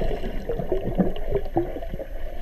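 Muffled underwater sound through a waterproof action-camera housing: a low rumble of water moving against the case, with scattered small clicks and bubbling blips.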